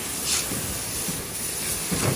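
Water spraying steadily from a pistol-grip hose nozzle onto a salmon, washing loose scales and slime off its side.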